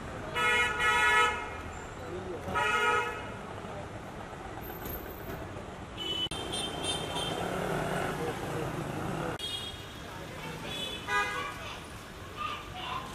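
Car horn honking, two short honks about half a second in and a third about two and a half seconds in, over street traffic noise and voices.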